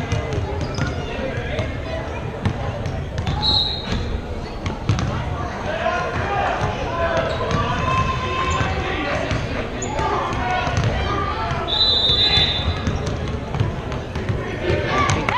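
Indoor gym babble of many children's and adults' voices, with a basketball bouncing on the hardwood floor now and then. Two short, high-pitched squeaks stand out, about three and a half and twelve seconds in.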